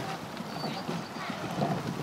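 Wind buffeting the microphone in an uneven rumble, with faint, indistinct voices in the background.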